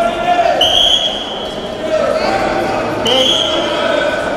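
Indistinct voices echoing in a large sports hall, with scattered thuds. Two long, steady, high tones sound about two and a half seconds apart.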